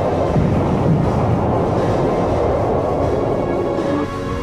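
Loud, steady rumbling din of war sound effects over dramatic music. At the very end it cuts to clearer, tuneful music.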